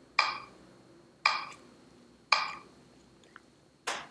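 Metronome ticking about once a second, each tick a short bright ring, pacing the count for slow yogic breathing. The tick about three seconds in is much fainter, and near the end comes a sharper, drier click.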